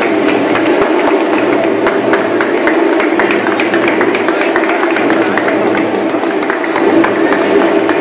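Scattered hand-clapping from a small audience, over steady background music and crowd murmur.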